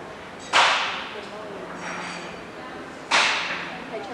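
Two loud, sharp cracks or slams, one about half a second in and one near the end, each ringing on briefly in an echoing room.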